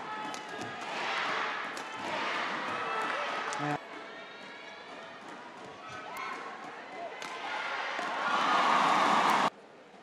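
Badminton rally with sharp clicks of rackets striking the shuttlecock and players' footwork on the court, under the noise of an arena crowd. The crowd swells into loud cheering and shouting near the end, then cuts off abruptly.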